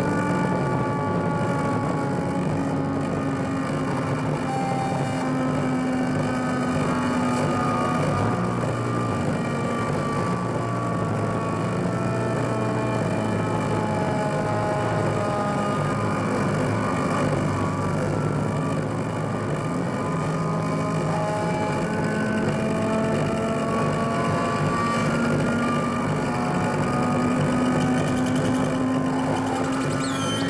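Noise-drone improvisation on a modular synthesizer with amplifier feedback: a dense, steady wall of noise layered with many slowly gliding tones that drift down and up in pitch.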